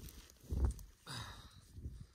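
Soft handling and movement sounds as a deer antler shed is picked up out of sagebrush: a dull thump about half a second in, then a short brushy rustle about a second in.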